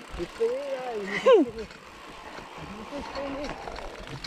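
A man's voice calling out, with a brief sliding exclamation about a second and a half in and fainter talk later, over the steady noise of bikes rolling on a dirt trail.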